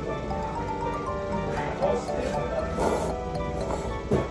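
Thick ramen noodles being slurped, in short noisy pulls about halfway through and again a second later, over steady background music.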